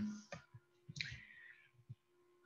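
A few faint, sharp clicks and a short hiss about a second in, heard through a video-call microphone during a pause in a man's talk, over a faint steady hum.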